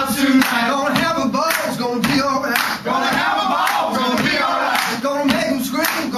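A group of men chanting and shouting together in a huddle, their voices raised in unison.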